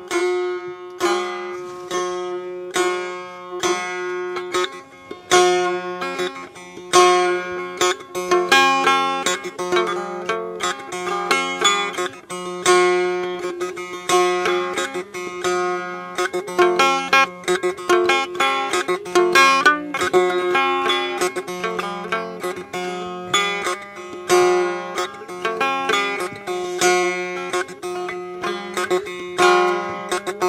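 Field recording of a Blaan kintra, a guitar-like plucked lute, playing a quick, repeating run of plucked notes over a steady low drone.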